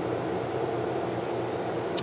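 Steady low hum and hiss of background room noise.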